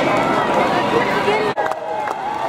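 Parade crowd noise: many voices shouting and calling at once, loud and continuous. It breaks off abruptly for an instant about one and a half seconds in, then picks up again.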